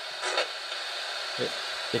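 Steady hiss of radio static, with a brief burst of noise a moment in and a short low sound later on.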